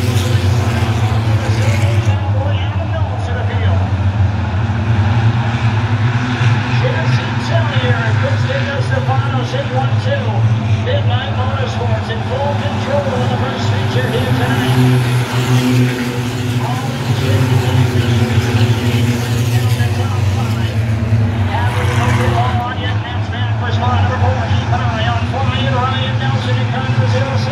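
A field of six-cylinder stock cars racing around a short oval, their engines making a steady, dense drone as they circle, mixed with a PA announcer's voice.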